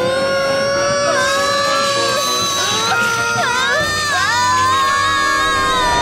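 Cartoon characters' high voices shouting in long, drawn-out cries, several at once, over background music; a second rising cry starts about halfway through and is held to the end.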